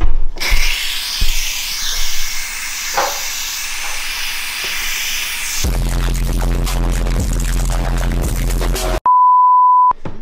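Crock-Pot electric pressure cooker's steam release venting with a loud, steady hiss for about five seconds. It is followed by an edited-in explosion with a deep rumble, and then a steady one-second beep tone.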